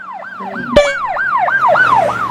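Siren in a fast yelp, its pitch sweeping up and down about four times a second, with a short sharp sound cutting in just under a second in.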